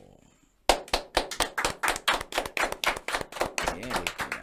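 Hand clapping that starts suddenly about two-thirds of a second in and goes on quick and uneven, several claps a second.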